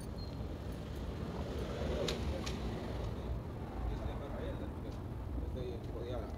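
Urban street ambience: a steady low rumble of road traffic under faint, distant voices, with two sharp clicks about two seconds in.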